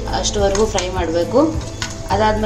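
A spoon stirring cashews and raisins frying in ghee in a small kadai, with light sizzling and clinks of the spoon on the pan. Background music with a wavering melody plays over it.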